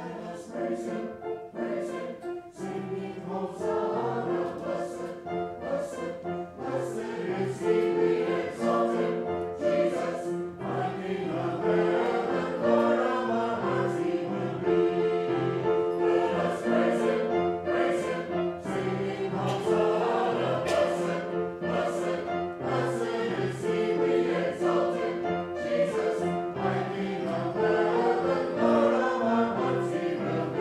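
Mixed church choir of men's and women's voices singing an anthem in harmony, with sustained notes.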